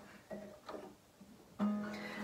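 A few soft, short notes plucked on a Taylor acoustic guitar.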